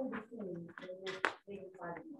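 Students' voices talking indistinctly, overlapping in a small room.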